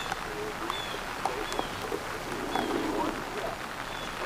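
Steady rain falling, an even hiss, with faint murmuring voices in the background.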